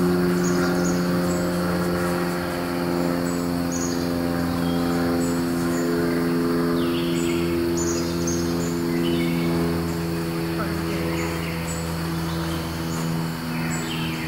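Outdoor woodland ambience: a steady low hum made of several even tones, with short high insect chirps repeating over it and a few brief bird calls.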